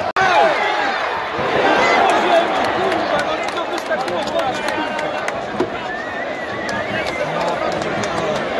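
Football stadium crowd: many voices talking and calling out at once in a steady hubbub, broken by a brief cut just after the start.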